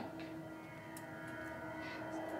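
Film soundtrack playing over a hall's speakers: a sustained, eerie drone of several steady held tones.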